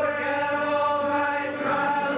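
A chorus of voices singing long held notes together in a stage musical, with a change of note near the end.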